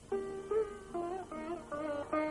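Background music: a plucked string instrument playing a slow melody of single notes, about two a second, some of them bent in pitch.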